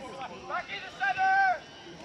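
Spectators shouting at a soccer game, with one long, high yell held for about half a second just past the middle.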